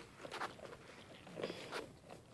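Goats' hooves stepping and shuffling on straw bedding, heard as faint rustling with a few soft scuffs.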